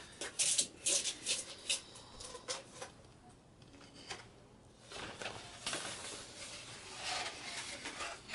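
Large paper art prints being handled and pulled from a box: several short rustles in the first few seconds, a quiet spell near the middle, then more rustling of paper toward the end.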